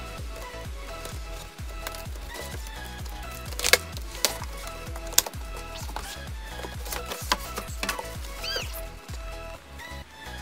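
Upbeat electronic background music with a steady beat, over a few sharp clicks and rustles of a cardboard box being cut open and its flaps pulled back, loudest about four to five seconds in.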